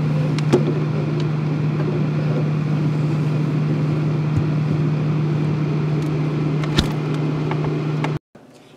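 Refrigerator running with a steady low hum, heard from inside the fridge. A light click about half a second in as the plastic popsicle molds are set on the wire shelf, and a sharp knock near the end as the door is shut.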